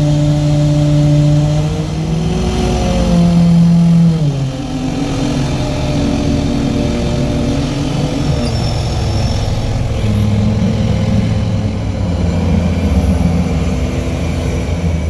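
Diesel engine of a Kato mobile crane, heard from inside its cab, running under hydraulic load as a slung bundle of steel shoring jacks is lowered. Its pitch rises a little about two seconds in, drops sharply just after four seconds, and shifts again around ten seconds as the controls are worked.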